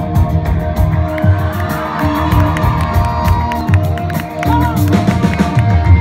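Live rock band playing an instrumental intro: drums, bass guitar, electric guitars and organ, heard from within the audience, with cheers and whoops from the crowd.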